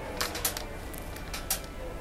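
A few sharp clicks and rattles from metal wire shopping carts knocking against each other, in two small clusters.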